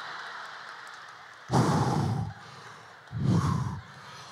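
Audience laughter dying away, then two loud, breathy sighs into a handheld microphone, about a second and a half in and again near three seconds.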